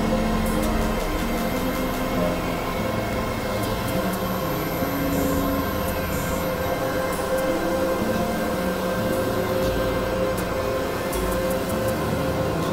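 Experimental electronic drone music from synthesizers: a dense, noisy industrial texture with steady held tones over low notes that shift every second or so, and scattered high clicks.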